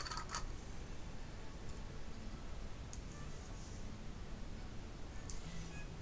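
Steady room noise with a few faint clicks near the start and one about three seconds in, as the lid is screwed onto a glass jar and the jar is handled.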